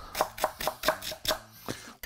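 Chef's knife chopping dill stems on an end-grain wooden cutting board: a quick, even run of blade knocks on the wood, about four a second.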